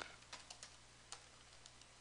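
Faint keystrokes on a computer keyboard: a handful of scattered clicks, most in the first half.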